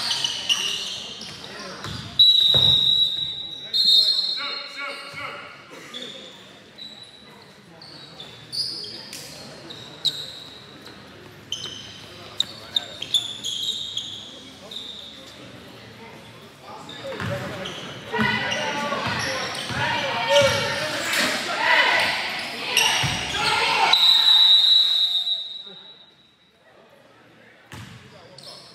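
Gym sounds of a basketball game: a ball bouncing on the court and sneakers squeaking, under the voices of spectators and players echoing in the hall. From about 17 s to 25 s the voices grow louder, then the noise falls away near the end.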